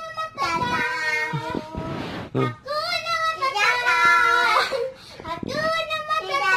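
A young child singing in long, wavering held notes, in three phrases with short breaks between them.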